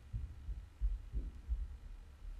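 Handling noise on the recording device's microphone: a run of low, dull thumps, about five in two seconds, over a faint low hum.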